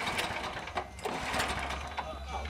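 Small garden tractor engine being pull-started, cranking with a rapid mechanical clatter that drops briefly about halfway.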